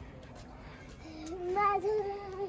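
A voice holding one long, slightly rising note, starting about a second in, like a drawn-out call or hum.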